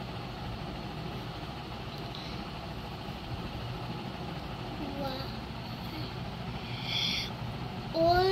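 Steady background noise with a ballpoint pen writing on exercise-book paper, a short scratch of the pen near the end. A few faint, short pitched sounds come from the background.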